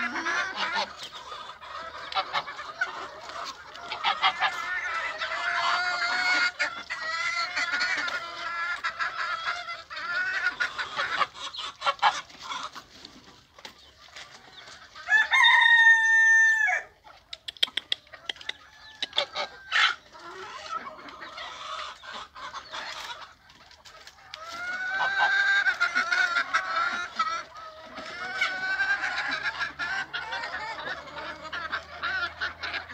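A flock of chickens clucking continuously, many calls overlapping, with one loud, drawn-out rooster crow about halfway through.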